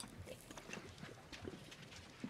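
Faint footsteps, a soft step about every half second.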